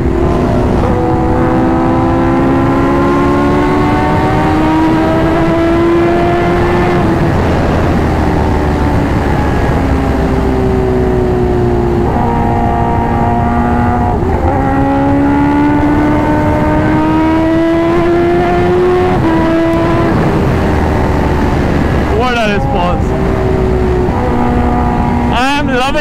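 Kawasaki H2R's supercharged inline-four engine pulling hard at highway speed under wind rush. Its note climbs slowly and falls back sharply several times as the rider eases off or changes gear.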